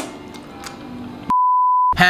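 Quiet room sound, then about a second in a single steady high beep, about half a second long, with all other sound cut out under it: an edited-in censor bleep.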